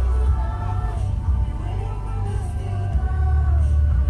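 Music with singing, over a steady low rumble.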